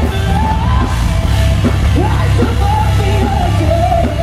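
A rock band playing loud through a festival PA, with bass guitar, guitars and drums under a pitched, held lead vocal.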